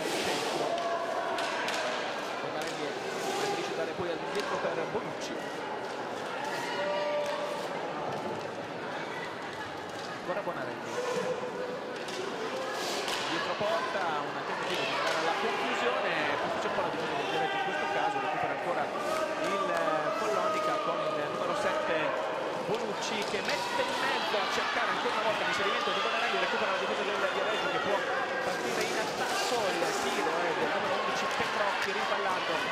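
Roller hockey play in a sports hall: sharp knocks of sticks on the ball and of the ball against the boards, with the clatter of skates, over spectators' shouting and cheering. The crowd gets louder about halfway through.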